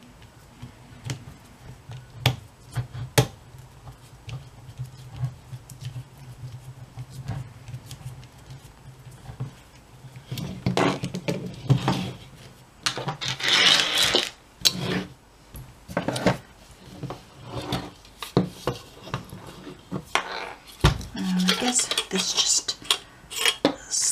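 Small metal clicks from a screwdriver turning the last screw out of a sheet-metal hard-drive caddy. Then louder scraping and clattering of the metal caddy and drive as they are handled, about halfway through and again near the end as the drive is worked out of the caddy.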